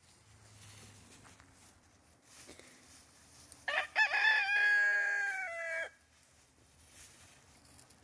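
A rooster crowing once, about four seconds in: a single crow of about two seconds, held steady before dropping at the end.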